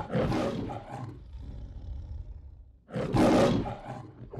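Lion roaring: the MGM studio-logo roar. A roar that has already begun fades away over the first second, and a second, shorter roar comes about three seconds in.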